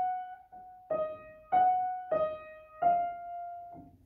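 Upright piano playing a slow melody of single notes in the middle-high register, roughly one note every half second to second, each struck and left to ring and fade.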